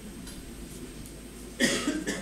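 Quiet room tone, then a single short cough near the end.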